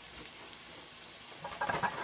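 Chopped onion and garlic sizzling in olive oil in a frying pan on high heat, the garlic already browned: a steady hiss, with a few crackles near the end.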